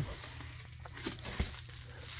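Plastic wrap on a foil-covered plate crinkling as it is handled, with a soft knock about one and a half seconds in.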